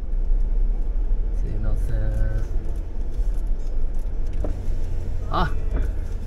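Low steady rumble of a vehicle driving slowly over grass, picked up by a camera on its bonnet, with brief voices about two seconds in and again near the end.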